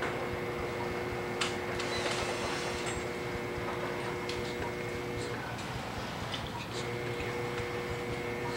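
A steady hum made of a few even tones over a constant hiss. The hum drops out for about a second and a half past the middle, then comes back. Faint scattered clicks and rustles sound now and then.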